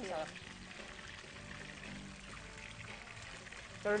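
A liquid sauce ingredient, such as fish sauce or lemon juice, being poured: a faint, steady pouring over soft background music.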